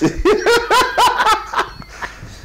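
Men laughing out loud: a quick run of ha-ha pulses, about five a second, that fades near the end.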